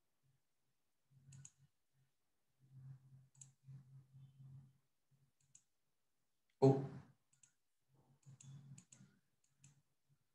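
Faint, scattered computer mouse clicks while the computer is being operated, over faint low muffled sounds, with a short spoken "Oh" about two-thirds of the way through.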